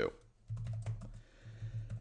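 Typing on a computer keyboard: a quick run of keystrokes starting about half a second in.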